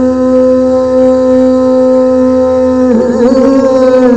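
A man's voice holding one long sung note into a handheld microphone, wavering and moving to a new pitch about three seconds in.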